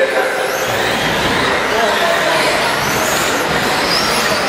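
1/10-scale 2WD short course RC trucks racing, their electric motors whining in high glides that rise and fall with the throttle.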